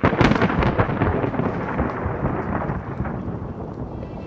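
Thunder-like rumble with crackling, loudest at the start and slowly fading. A sound effect under an animated logo reveal.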